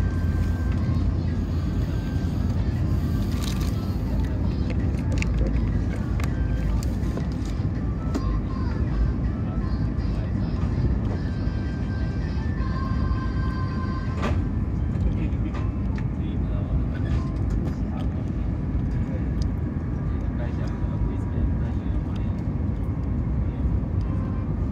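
Steady low rumble of a CRH380A high-speed train heard from inside the passenger cabin while it runs along the line. Faint voices are in the background.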